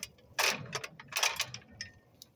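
Aluminium ladder being shifted and set against the tree, with two short bursts of metal rattling and clanking and a few lighter clicks near the end.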